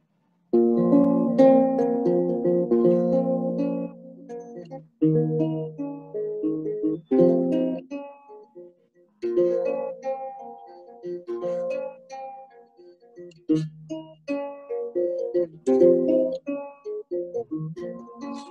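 Small acoustic guitar, tuned a little high, playing chords as an instrumental intro. It starts about half a second in and plays in phrases with short breaks.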